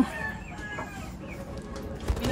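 Faint bird calls in the background, with a short spoken 'ah' at the start.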